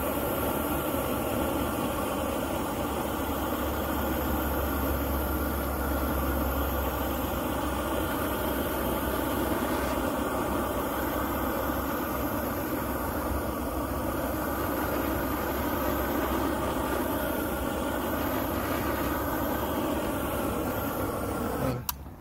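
GrillGun high-power propane torch burning at full flame with a steady rushing sound as it chars the end of a wooden four-by-four. The sound drops off suddenly just before the end.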